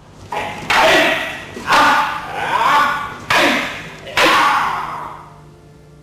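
Wooden bokken striking together in paired sword practice, about five sharp clacks over four seconds. Each clack is followed by a loud, drawn-out sound that fades over about a second, with shouts mixed in.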